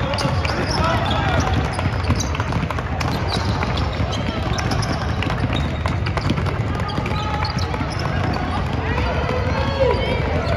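Many basketballs dribbled at once on a hardwood court, a continuous irregular stream of short bounces, mixed with voices talking in a large arena.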